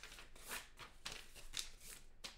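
Paper or card being handled close to the microphone: a handful of short, soft rustles.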